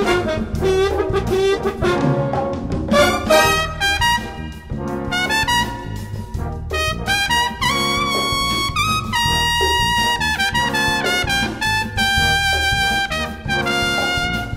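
A batterie-fanfare (French military bugle-and-brass band) playing a jazz blues, the brass carrying the tune. Short, punchy phrases give way to longer held notes about halfway through.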